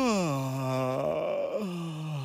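A cartoon genie's big voiced yawn: a long, deep male groan that slides down in pitch and holds, then sags lower again. He is growing sleepy after a sip of hot cocoa.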